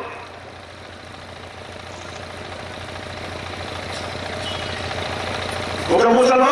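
A steady low engine-like rumble with hiss, slowly growing louder.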